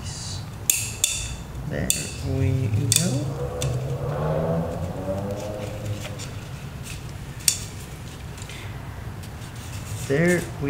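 Sharp clicks and knocks of an oil filter cap wrench being worked on the oil filter cap it is stuck on, a handful of separate hits with the loudest near the start and another late on. A low voice is heard under it for a few seconds in the middle.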